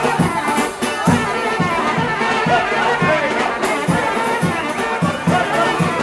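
Traditional Macedonian folk dance music: a loud wind-instrument melody over a steady drum beat of about two strokes a second.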